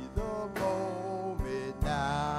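A man singing a slow song into a microphone over instrumental backing, holding long notes, with a few sharp beats in the accompaniment.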